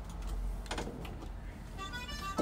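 Quiet studio room tone with a low hum and a few soft clicks and knocks from hands on the mixing desk and the microphone arm; faint music starts to come in at the very end.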